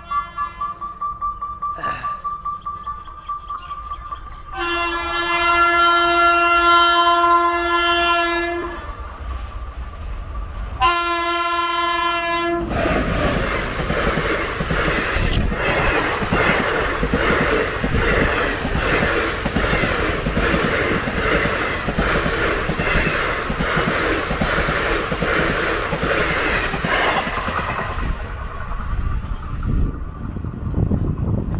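Passenger train horn sounding one long blast and then a short one. The train then runs through the level crossing, its coaches clattering rhythmically over the rail joints, and the sound fades near the end.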